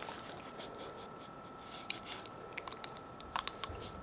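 Faint, scattered clicks and scratches of a pit bull's teeth working at a dried pig ear, more frequent in the second half.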